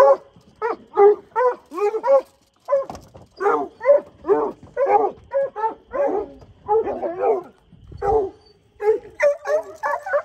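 Hunting hounds barking and baying at a red fox hiding under a shed, a steady string of short calls about two a second, each dropping in pitch, turning quicker and choppier near the end.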